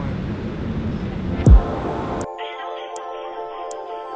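Wind buffeting the microphone, with a brief, loud falling whoosh about one and a half seconds in. Just after two seconds it cuts suddenly to mellow background music with steady tones and a light ticking beat.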